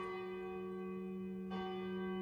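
A large bell ringing with many lasting tones. It is struck again about one and a half seconds in, the earlier tones still ringing on.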